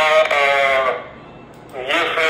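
A man's voice speaking, drawing out one long held vowel, then a short pause and the speech starting again near the end.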